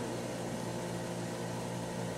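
Steady low hum with an even hiss: the room tone of a hall, with no speech.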